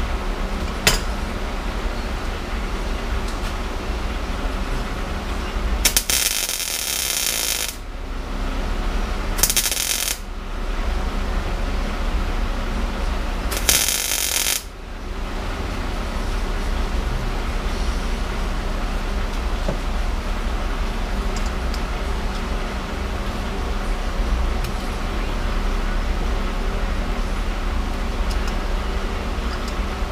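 Three bursts of welding arc crackling, the longest about two seconds and the others about a second, as weld is built up on a broken exhaust stud in an LSX cylinder head so the stud can be gripped and pulled. A steady low hum runs underneath.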